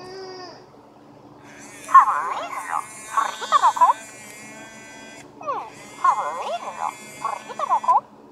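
Interactive electronic plush toy, just switched on, making chirping, warbling baby-like calls through its small speaker. The calls come in two runs of quick bursts with a short pause between them.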